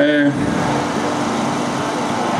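The tail of a man's word through a microphone, then steady outdoor background noise with a faint low hum.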